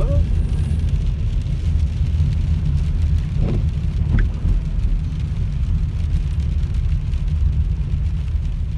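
Steady low rumble of a car's engine and tyres on a wet road, heard from inside the cabin as it rolls slowly through traffic.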